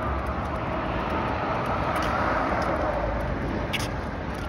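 Road traffic passing close by: a steady rush of tyre and engine noise that swells about two seconds in, with a faint falling whine as a vehicle goes past.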